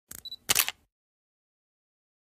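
Camera shutter sound effect: two quick clicks in the first second, the second one louder.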